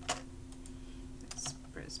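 A few sharp computer keyboard clicks, among them the spacebar being pressed, over a low steady hum.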